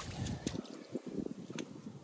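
Shallow creek water sloshing and splashing around hands working below the surface, with a few small knocks scattered through it. Wind buffets the microphone.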